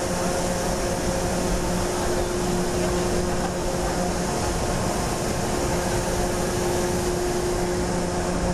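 Steady roar of rushing air from a vertical wind tunnel's fans, with a constant low machine hum underneath.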